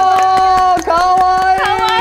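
Maids' drawn-out sung welcome cheer: high voices holding one long note, a short break, then a second long note, over quick hand clapping.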